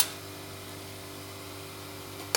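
A single sharp click right at the start, then a steady low mechanical hum with a faint hiss.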